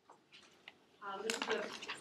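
Near silence in a lecture hall, then about a second in a faint voice starts speaking, with a few light clicks.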